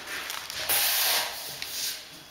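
A laminate floor plank pulled from a stack, its face scraping across the board beneath in one loud, hissing slide lasting about half a second, with a few lighter scuffs and knocks around it.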